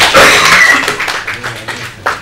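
Audience applauding, loudest at first and then fading away.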